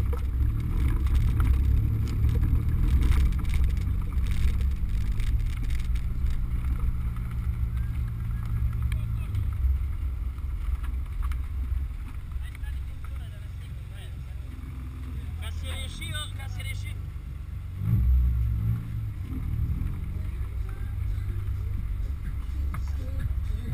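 BMW E36 M3's S54B32 3.2-litre straight-six pulling the car along slowly at low revs, a steady low drone that eases off and gets quieter about halfway through. A short louder surge comes a few seconds before the end.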